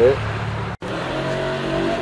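A steady mechanical hum with several held tones, like a motor or engine running, with a brief total dropout a little under a second in.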